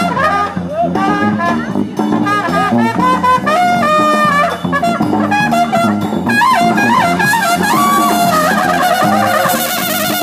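A brass band plays an up-tempo jazz tune. Trumpets carry the lead lines, with bends and held high notes, over trombone, saxophones and a steady low bass part.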